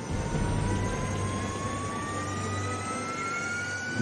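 Jet engine spooling up: a thin whine rising steadily in pitch over a steady rush of noise and a low hum.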